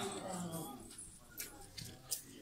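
A small child whimpering briefly at the start, followed by faint background voices and a few light clicks.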